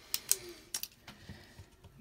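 A few light clicks and taps, clustered in the first second, from a pen being picked up and handled over a sheet of paper on a tabletop.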